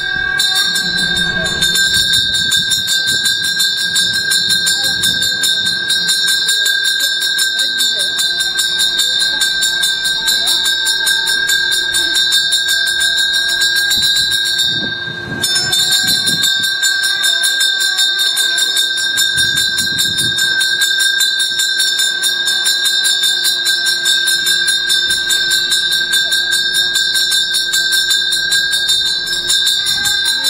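Temple bell rung rapidly and without pause during a Hindu puja, a steady metallic ringing with a brief break about halfway.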